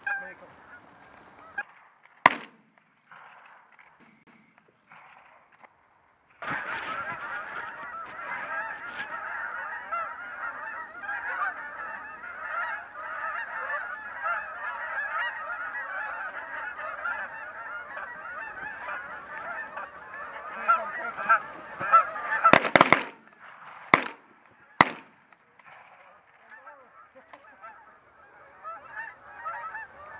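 A flock of Canada geese honking in a dense, continuous chorus, starting about six seconds in. Near the end three loud shotgun shots go off about a second apart, and the honking thins out afterwards.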